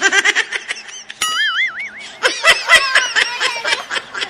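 Cartoon-style comedy sound effects over music: a quick run of clicks and chirps, a wobbling, warbling tone about a second in, then a burst of laughter.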